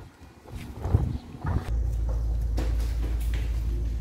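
A few footsteps, then a steady low rumble that stops abruptly at the end.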